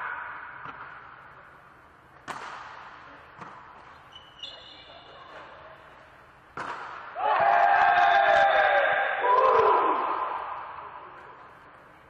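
Volleyball being struck during a rally in an echoing gym: a few sharp hits of the ball, the last about two-thirds of the way in. Right after the last hit, several voices shout loudly for about three seconds, then die away.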